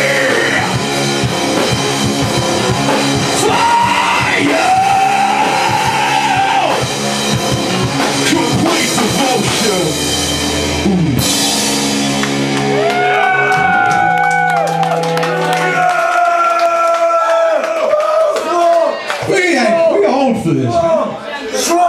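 Live rock band playing loud, with drums, bass, guitar and shouted vocals. About halfway the drums drop out, and only held, bending guitar notes ring on.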